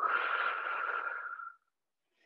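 A woman's long audible exhale, about a second and a half, breathy with a faint steady whistle through it, fading out at the end.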